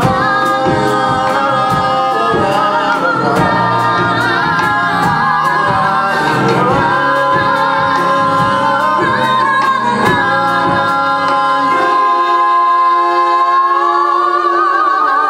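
Several cast voices singing long held notes in harmony over a live band keeping a steady beat; the low bass and drums drop out near the end, leaving the voices and upper instruments.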